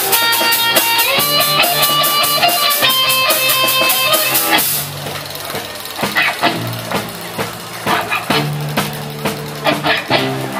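Live rock band playing an instrumental passage on electric guitars with drums, the cymbals keeping a steady beat. About five seconds in the cymbal strokes stop and the music falls back, quieter, to sparser picked guitar notes over low held notes.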